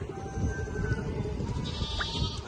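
A goat bleats briefly near the end, a short wavering call, over a steady low background rumble.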